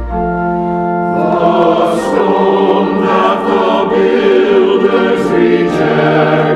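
Church choir singing with organ accompaniment. A held organ chord sounds first, and the choir's voices come in about a second in.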